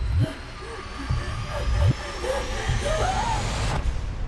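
Trailer score and sound design: deep booming hits about every half second under a thin high tone that climbs steadily in pitch, building tension. It all cuts off abruptly just before the end, on the cut to black.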